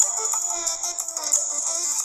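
Music playing at full volume from an iPhone 5s's single mono loudspeaker. It sounds thin and bright, with no bass and no crackling or distortion.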